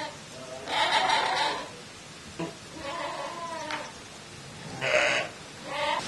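Sheep bleating: two long, wavering calls, followed by a short noisy burst near the end.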